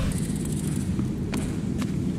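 Low rumble of a child's balance bike's small wheels rolling across indoor skatepark ramps, with a few faint clicks and knocks.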